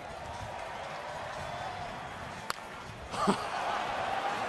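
Stadium crowd noise, then a single sharp crack of a wooden bat hitting a baseball about two and a half seconds in, on a swing that sends the ball out for a home run. The crowd noise swells a little after the hit.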